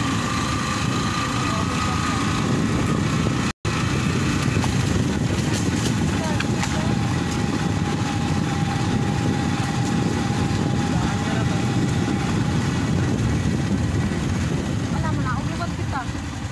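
Motorcycle engine running while riding, under a steady rush of wind on the microphone, with a split-second gap in the sound about three and a half seconds in.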